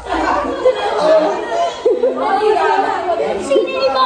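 Several people talking over one another at once, a busy overlapping chatter of voices.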